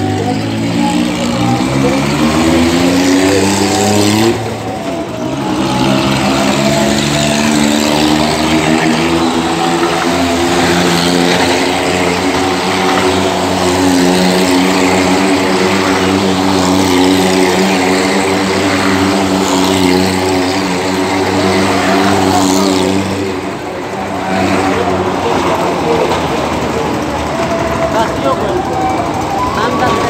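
Small car's engine revving up over the first few seconds, then held at steady high revs as it circles the wall of a well-of-death pit. The revs dip briefly about four seconds in and again about three quarters of the way through.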